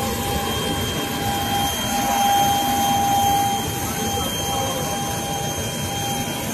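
Business jet's turbine engines running on the ground: a steady loud rush with a high, steady whine over it.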